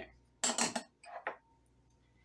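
Small glass prep bowls clinking against each other and a bowl as the spices are tipped out and the empties set down: two short clinks, the first louder.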